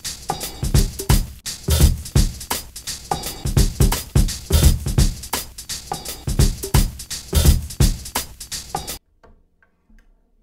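Lo-fi boom bap drum loop at about 85 BPM, programmed on an Akai MPC 1000: swung kicks and snares. It stops abruptly about nine seconds in.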